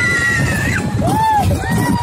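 Children's high-pitched squeals and shrieks on a small roller coaster: one long, slightly rising squeal, then a shorter rising-and-falling cry about halfway through, over the constant low rumble of the moving ride.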